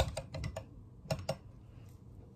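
Light, sharp clicks and taps from a plastic mascara tube being handled close to the microphone: a quick cluster in the first half-second, then two more a little over a second in.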